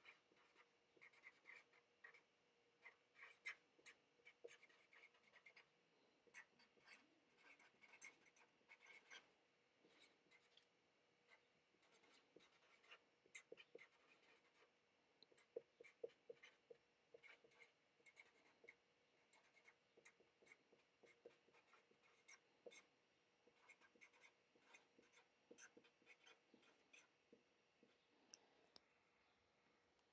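Faint scratching and squeaking of a Sharpie felt-tip marker writing on paper, in short irregular strokes, most of them in the first half.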